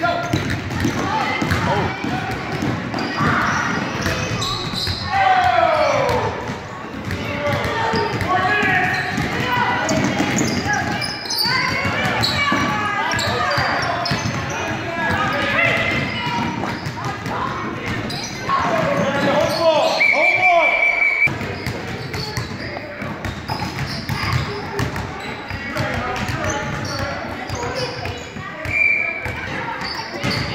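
A basketball bouncing on a hardwood gym floor during play, with many sharp bounces. Indistinct voices and shouts from players and onlookers echo in the large gym.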